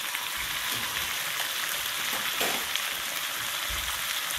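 Flanken-cut beef short ribs sizzling steadily as they fry in a nonstick frying pan, a continuous even hiss.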